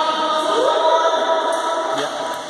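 Several voices holding long calls together, like a group chant, with one voice sliding upward about half a second in.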